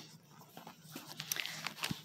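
Faint handling noise from a paper notebook being moved: soft rustles and light taps, with a low knock near the end.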